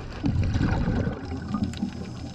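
Water bubbling and rushing as heard underwater, a low gurgling rumble that swells for about a second near the start.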